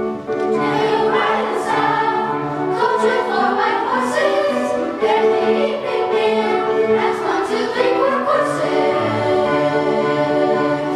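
Middle school choir singing with many young voices together, the melody rising and falling over steady, repeated held notes below.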